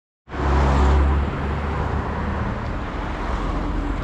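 Wind rumble on the microphone and street noise while riding a bicycle through city traffic, loudest in the first second.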